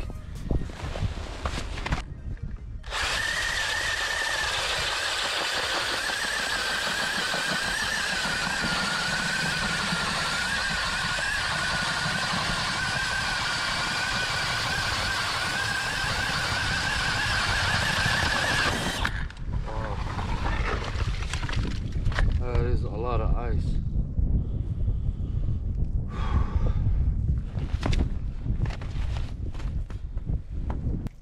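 Cordless drill spinning a K-Drill ice auger as it bores through lake ice: a steady motor whine that wavers and dips slightly in pitch under load, running for about sixteen seconds and stopping suddenly. Irregular, gusty noise follows after the drill stops.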